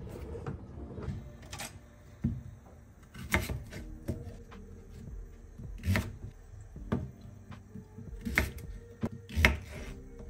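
Kitchen knocks and clicks: a plastic food container's lid pressed shut, then a knife cutting through small potatoes onto a wooden cutting board, a sharp knock every second or so.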